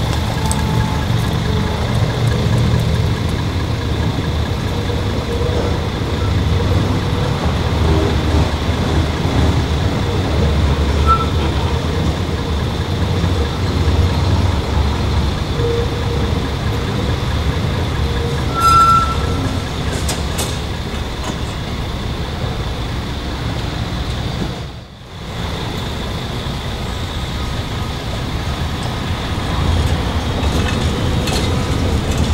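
A diesel bus idling, a steady low rumble, with a short high squeal about nineteen seconds in. Near the end a DÜWAG TW 6000 light-rail car rolls in toward the terminus loop.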